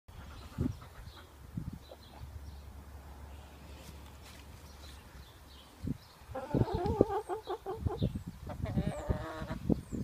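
An animal calls twice, each call drawn out for about a second, in the second half, among low knocks. Short, faint bird chirps are scattered throughout.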